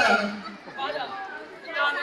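Indistinct chatter of people talking, in short fragments with no clear words.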